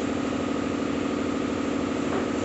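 Steady machine hum with a strong, even low drone.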